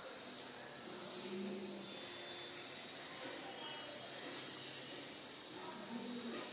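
White chalk scraping along a blackboard as a straight line is drawn, over a steady background hiss.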